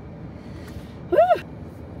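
A woman's single excited "woo!" whoop about a second in, its pitch rising then falling, over steady low background noise.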